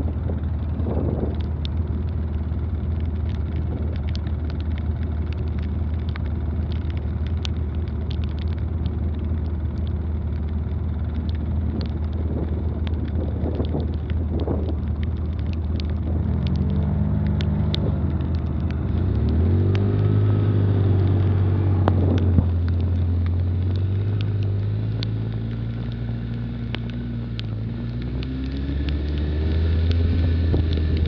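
ATV engine idling with a steady low drone, then revving up about two-thirds of the way through as the machine pulls away, with its pitch rising again near the end as it speeds up. Scattered light ticks run throughout.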